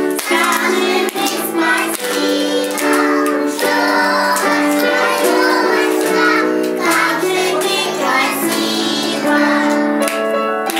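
A children's song: children's voices singing over a musical accompaniment, at an even level throughout.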